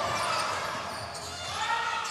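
Basketball being dribbled on a hardwood gym floor, in the echo of a large indoor hall.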